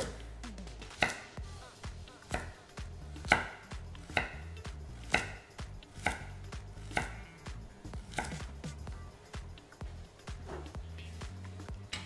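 Chef's knife slicing carrot pieces thin for a paysanne cut on a bamboo cutting board. The blade knocks on the wood roughly once a second at an uneven pace.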